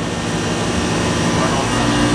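Steady, loud mechanical running noise with a low hum beneath it and no distinct events; a further steady hum joins near the end.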